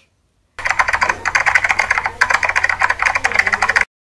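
A loud, rapid run of sharp clicks like fast keyboard typing, starting about half a second in and cutting off abruptly just before the end.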